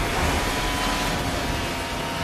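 Film sound effects of a car crash: a dense, steady rushing noise as the car flips through the air, with faint held tones of the film score underneath.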